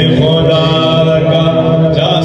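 A man's voice chanting into a microphone over a public-address system, holding long drawn-out melodic notes.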